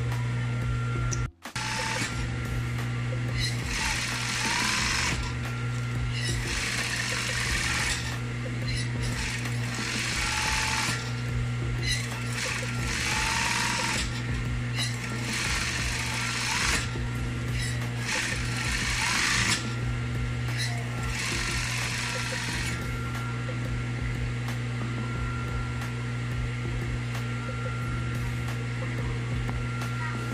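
Industrial flat-bed sewing machine stitching cotton curtain fabric in short runs of a couple of seconds each, about seven in all, with pauses between them. Its motor hums steadily throughout and the runs stop a little after two thirds of the way through.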